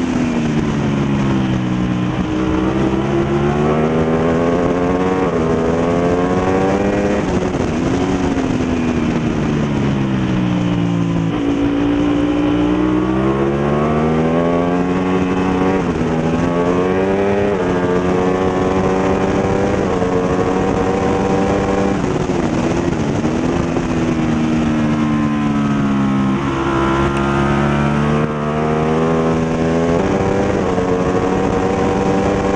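Ducati V-twin superbike engine at race pace from an onboard camera, revving up through the gears with a sudden drop in pitch at each upshift, then falling in long slides as it slows for corners, over steady wind rush.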